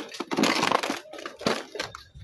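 Crunching and crackling of burnt fire debris underfoot: a noisy burst of crunching in the first second, then a few sharp cracks.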